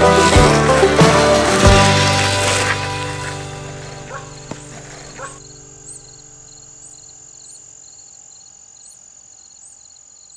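The last chords of an acoustic folk-rock song ring out and fade over the first five seconds. Then crickets chirp faintly over a steady high drone.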